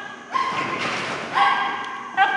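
Dog barking excitedly while running an agility course: two high, drawn-out barks about a second apart.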